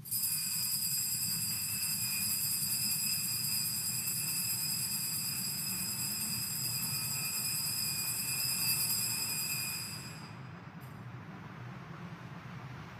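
Altar bells ringing continuously, a steady high metallic ring that stops about ten seconds in. They mark the elevation of the consecrated host at Mass.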